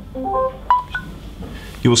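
A short electronic chime of quick notes, mostly climbing in pitch, with one sharp click about two-thirds of a second in, as the Samsung Galaxy Tab seats onto the dock's pin connector and starts to charge.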